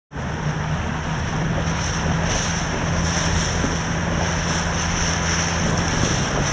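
Small boat's outboard motor running steadily, with wind buffeting the microphone and water rushing past.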